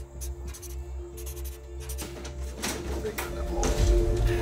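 Background music of sustained tones over a pulsing low bass, with scattered short knocks and rustles, the loudest near the end.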